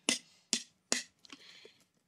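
Finger flicks thwacking a Lalvin EC-1118 yeast packet held over a glass jug's neck, to knock the last yeast stuck in the bottom of the packet into the must. Three sharp taps come about half a second apart, followed by a faint rustle of the packet.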